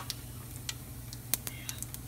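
Cumin seeds crackling in very hot oil in a nonstick frying pan, the first stage of a tadka: scattered sharp pops, a few a second and irregular.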